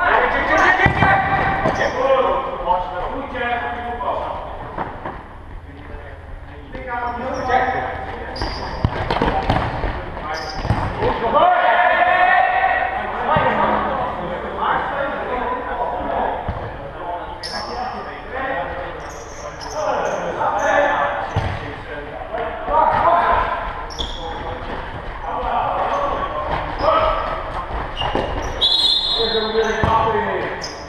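Indoor football being played in a sports hall: players' voices calling out on and off, with the ball thudding as it is kicked and bounces on the hall floor. The sounds echo in the hall.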